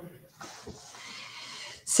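Faint, steady background hiss between spoken greetings, with no distinct sound event.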